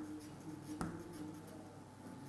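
Chalk writing on a blackboard: faint scratching strokes, with one sharper tap of the chalk just under a second in.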